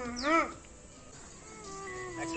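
A comic, buzzy voice sings one more word of a fast repeated chant, with a high sweep falling over it. A short lull follows, then steady electronic background music notes come in near the end.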